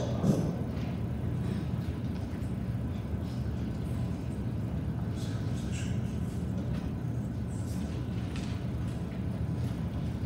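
Steady low hum of room noise in a large hall, with faint shuffling and rustling as people move about.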